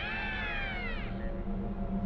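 A cat's long meow that rises briefly and then falls, fading out a little over a second in, over soft background music with a low steady drone.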